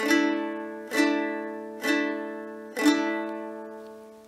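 Six-string early medieval lyre strummed four times on a D chord in block-and-strum technique: the G, B and C strings are damped by the fingers while the A, D and E strings ring open. Each strum, about a second apart, rings on and fades away.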